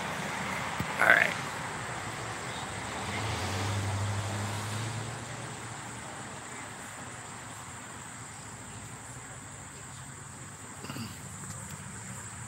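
Outdoor road traffic noise: a steady low rumble, with a vehicle's engine hum swelling and then fading about three to five seconds in as it passes.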